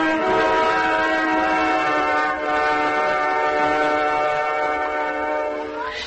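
Radio orchestra playing a music cue: long held chords of several notes at once, easing off near the end.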